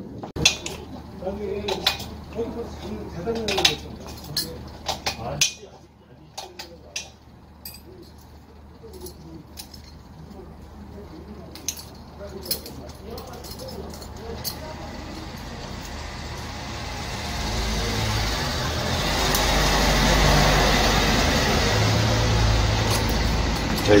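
Metal clinks and taps of hand tools on the fittings of an oilless air compressor while the safety valve is being taken off. Over the second half, a low rumble with a hiss over it swells up over several seconds and becomes the loudest sound.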